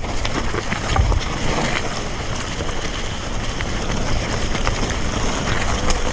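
Wind rushing over a GoPro's microphone on a fast mountain-bike descent, with the tyres rolling over loose gravel and rocks and the bike rattling in scattered clicks. A low thump about a second in.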